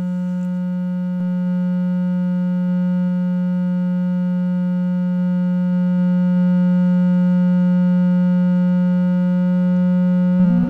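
The Drome, a four-oscillator triangle-wave additive synthesizer, holding a steady drone of mixed tones with one strong low tone and several fainter higher ones. It gets slightly louder about a second and a half in and again around six seconds in.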